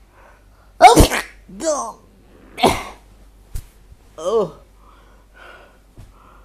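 A young man with a cold sneezing loudly twice, about a second in and again a second and a half later. Each sneeze is followed by a short falling vocal sound.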